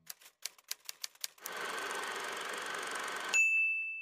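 Typewriter sound effect: about eight quick, uneven key clacks, then a steady noisy whirr for nearly two seconds. It ends in a single bright bell ding that rings on.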